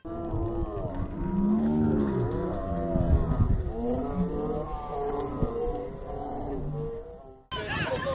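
Low-pitched voices calling out in drawn-out tones. The sound starts abruptly and cuts off sharply about half a second before the end.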